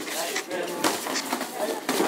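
Busy voices in a gym hall, with a few sharp slaps and knocks from an amateur boxing bout in the ring, about a second in and near the end.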